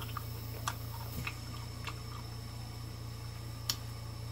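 A few faint, scattered mouth clicks from a person eating, over a steady low hum.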